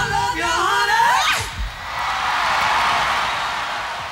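Two rock singers, a man and a woman, belting a high, wavering line together into one microphone at a live concert. About a second and a half in the voices stop and a crowd is heard cheering.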